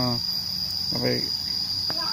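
Insect calling in one unbroken high, steady tone, with a short vocal sound about a second in and a single sharp click near the end.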